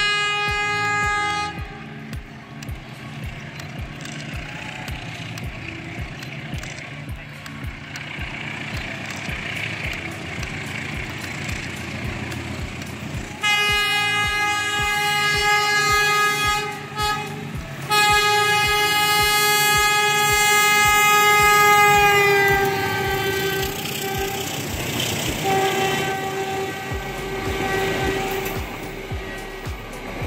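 CC201 diesel-electric locomotive approaching and passing, sounding its horn: a short blast at the start, two long blasts in the middle, the second falling in pitch as the locomotive goes by, and another long blast near the end. Under the horn runs the steady low rumble of the diesel engine and the coaches rolling past.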